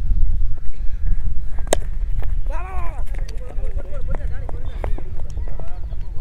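A low rumble of wind on the microphone throughout, with a single sharp crack about a second and a half in: a cricket bat striking the ball. Shouting voices follow.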